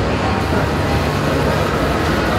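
Busy shopping-centre ambience: a steady low rumble under a haze of indistinct crowd chatter.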